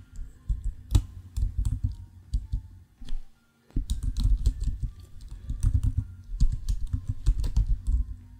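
Typing on a computer keyboard: quick runs of keystrokes, with a short pause a little after three seconds in before the typing resumes.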